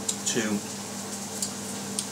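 A man's voice says one short word, then pauses over a steady low hum and a faint, even hiss in a small room.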